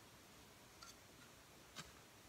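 Near silence: a faint steady hiss, with two faint clicks, one just before a second in and a sharper one near the end.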